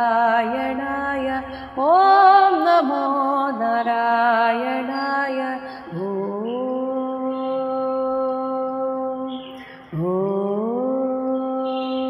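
A single voice chanting a devotional Hindu mantra in long sung notes: a wavering, ornamented phrase about two seconds in, then two long held tones starting about six and ten seconds in, each sliding up into a steady pitch.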